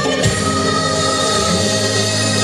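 Bengali patriotic dance song playing, with singing over long held instrumental notes; a last drum beat falls right at the start, then the notes are held steady.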